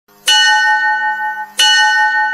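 A bell struck twice, a little over a second apart, each strike ringing on with long, steady tones.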